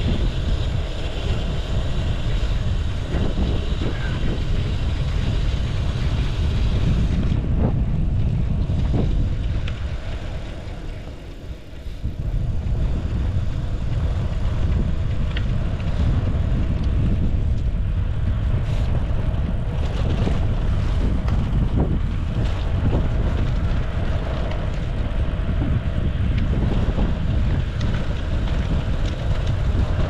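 Wind buffeting an action camera's microphone on a moving road bike, a steady low rumble mixed with tyre noise on asphalt. It eases for a couple of seconds about ten seconds in, and a few faint clicks come through.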